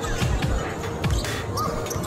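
Basketball dribbled on a hard court floor, repeated thuds of the bounces over music and crowd noise.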